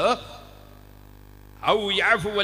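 A man's lecturing voice stops just after the start and comes back near the end. In the pause of about a second and a half, only a steady electrical mains hum remains.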